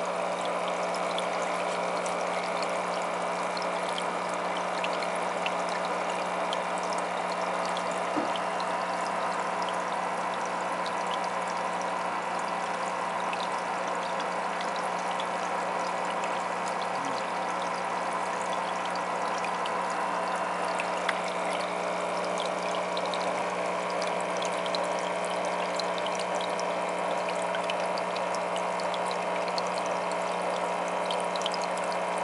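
Aquarium air stone bubbling steadily, with the steady hum of the tank's pump underneath and scattered faint ticks.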